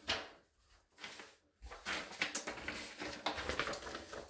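A sheet of paper rustling as it is handled and lifted, in several short stretches with brief quiet gaps in the first two seconds.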